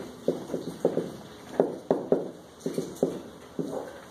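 A run of about a dozen light, irregular knocks and taps from a marker striking and stroking a whiteboard as a line is written, together with footsteps as the writer steps away.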